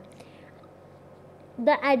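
A pause in a woman's speech, filled only by faint steady background hiss. Her voice resumes near the end.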